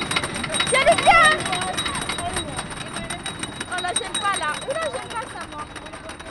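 Wooden roller coaster train running slowly along its track with a steady, rapid clicking, with riders' voices in snatches over it.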